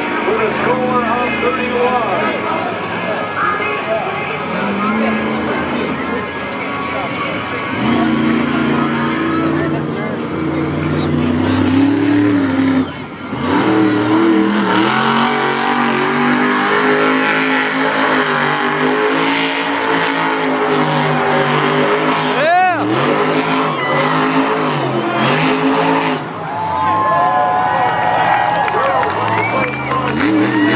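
The Madusa monster truck's supercharged V8 revving as the truck spins donuts in the mud, its engine note rising and falling over and over, with a brief dip about 13 seconds in.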